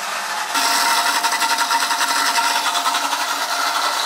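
Electric blender motor starting suddenly about half a second in and running steadily with a high whine, blending dates into a sauce.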